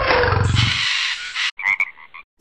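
Intro sting roar sound effect: a pulsing low growl under a falling tone, trailing off into a hiss that cuts off about one and a half seconds in, followed by a couple of short blips.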